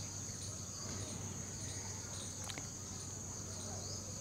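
Crickets chirring steadily at a high pitch, with a faint low hum underneath.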